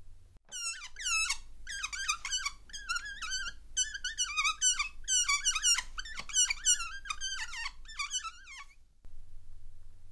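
A rapid, unbroken string of short, high-pitched falling squeals, a few each second, that starts about half a second in and cuts off abruptly near the end.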